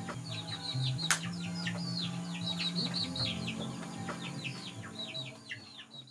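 Many birds chirping in quick, falling notes over background music with low held notes, with a single sharp click about a second in; it all fades out near the end.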